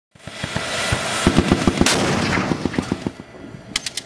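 Machine-gun fire: a rapid string of shots, about seven a second, over a continuous rumbling noise, thinning out after about three seconds, with a few last sharp cracks near the end.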